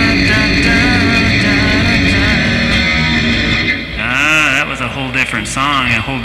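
Electric guitar playing rock music. In the second half come notes that waver up and down in pitch.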